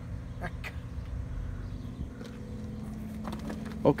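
Freightliner truck's diesel engine idling with a steady low hum, with a couple of faint knocks about half a second in.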